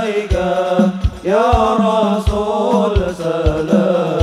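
Male voices singing a sholawat (Islamic devotional song) through a PA system, holding long notes that bend up and down, over a low drum beat about two to three times a second. The singing breaks off briefly about a second in, then comes back.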